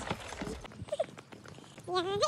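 Footsteps on a paved path, a string of light irregular clicks, with a low wind rumble on the microphone that stops about half a second in.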